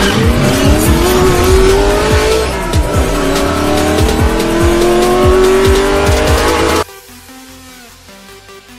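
Intro music with a heavy bass-drum beat, overlaid with a car engine sound effect revving up in long rising sweeps. About seven seconds in, the revving and beat cut off suddenly, leaving quieter music.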